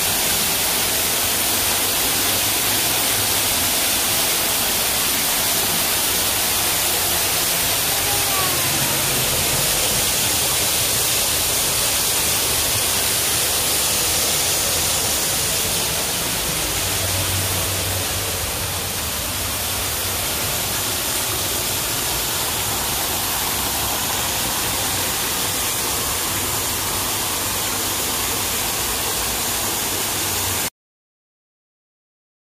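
A small waterfall pouring into a rocky pool: a steady, full rush and splash of falling water with no break.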